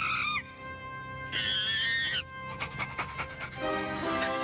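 Two short high-pitched animal calls over background music with sustained tones: one right at the start, the second, noisier and higher, about a second and a half in. A few light clicks follow.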